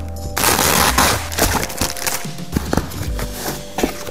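Plastic bubble wrap crackling as it is pulled and torn off a parcel, a dense run of crackles about a second long near the start, then scattered crackles and handling clicks.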